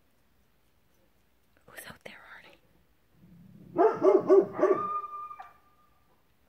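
Great Pyrenees barking: four deep, loud barks in quick succession about four seconds in, followed by a thin, steady howl-like note that holds to the end.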